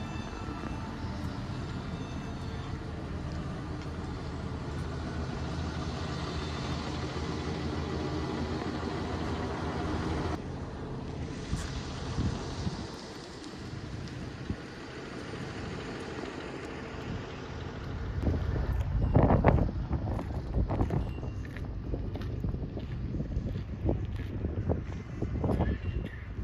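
For the first ten seconds or so, a vehicle engine runs with a slowly rising pitch, then cuts off suddenly. From about two-thirds of the way in, wind gusts buffet the microphone in loud low rumbles.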